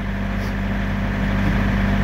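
Trailer refrigeration unit (Thermo King SB-230) with its diesel engine running, a steady low drone.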